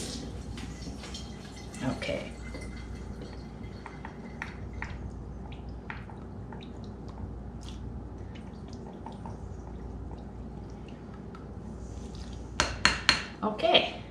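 Light clicks and taps from a plastic measuring spoon and a sauce bottle over a glass bowl while soy sauce is measured out. Near the end comes a quick run of sharp knocks as the utensils are handled on the hard counter.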